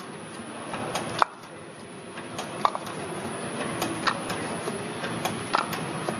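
Meyer potting machine's pot destacker running with a steady hum, dispensing fibre pots from a stack, with a sharp mechanical click about every second and a half.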